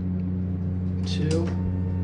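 Steady low electrical hum inside an elevator car while the floor button for 2 is pressed, with a faint thin tone coming in near the end.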